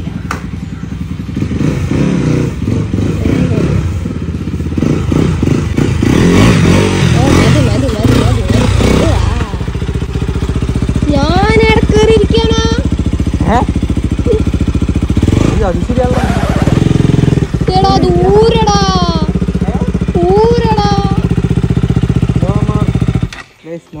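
KTM motorcycle engine running loudly, revving with a fast pulsing sound over the first several seconds, then holding a steady note. In the second half a voice calls out in rising and falling glides over the engine, and the engine sound cuts off suddenly near the end.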